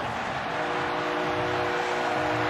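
Steady stadium ambience on a TV broadcast: an even wash of noise with a held chord of several low steady tones underneath, level throughout.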